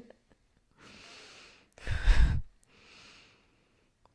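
A woman breathing close to an overhead microphone. There is a faint breath in, then a louder breath out like a sigh about two seconds in, with a low rumble of breath on the microphone, then another faint breath.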